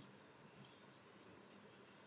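Two faint computer mouse button clicks in quick succession about half a second in, over near-silent room tone.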